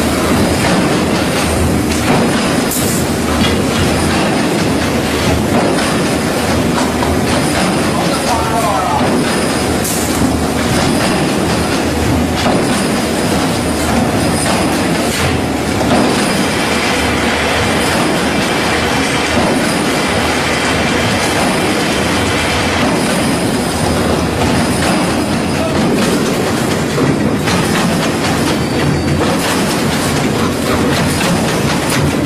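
Gabion basket wire-weaving machinery running steadily, a continuous loud mechanical noise.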